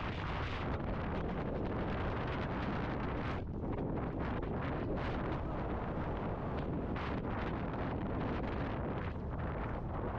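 Steady wind noise buffeting a hat-mounted GoPro's microphone as the horse carries the rider forward, strongest in the low end.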